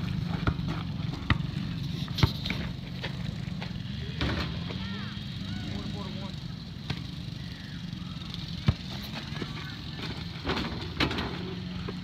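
Small engines of ATVs or three-wheelers running out in a field, a steady drone whose pitch wavers a little, with a few sharp knocks scattered through it.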